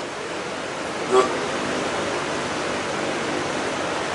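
Steady, even hiss of background noise in a pause in speech, with one brief vocal sound about a second in.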